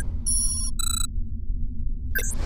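Computer-interface sound effects: two short, high electronic beeps in the first second, over a steady low rumble.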